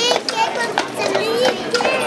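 Children's high voices chattering and calling out, over a pair of Belgian draft horses walking on the paved street, their hooves clip-clopping in an uneven run of sharp knocks.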